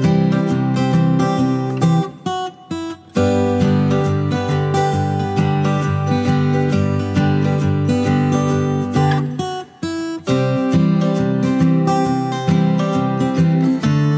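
Background music of strummed acoustic guitar, with two short breaks: one about two seconds in, one near ten seconds.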